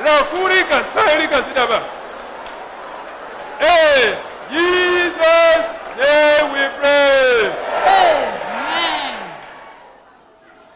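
A single voice shouting a run of about seven long, drawn-out cries in worship, each swelling and falling in pitch, the last two fainter. They follow a couple of seconds of fast speech.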